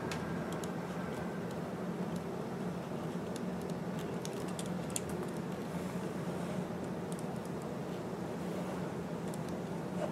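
Pen writing on notebook paper: faint irregular scratches and small taps from the strokes, over a steady low hum.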